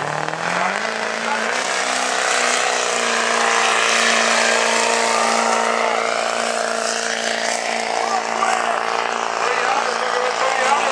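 Diesel pickup truck engine revving up over the first second, then held at steady high revs under load as it drags the weight sled down the pulling track.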